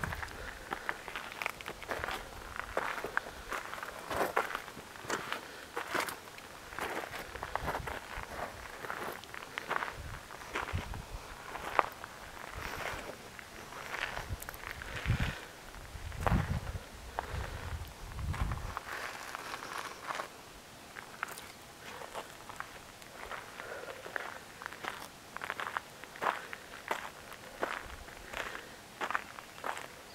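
Footsteps on a rocky dirt and gravel trail, a steady walking pace of sharp scuffing steps, with a low rumble for a few seconds around the middle.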